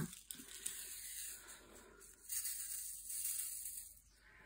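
Faint rustling of a small plastic bag of diamond painting drills being handled and tipped into a plastic tray, with a few light clicks early on and a louder rustle in the second half.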